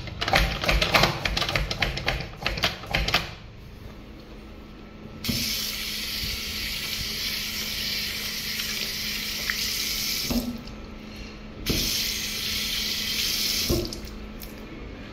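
A series of quick plastic clicks and knocks as a wall-mounted soap dispenser is pumped, then a bathroom faucet running into a sink for about five seconds, stopping, and running again for about two seconds near the end.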